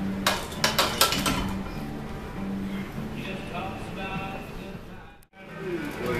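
Several sharp metallic clanks in the first second and a half, from a plate-loaded barbell and its plates knocking on the steel bench uprights, over steady background music. The sound drops out briefly near the end.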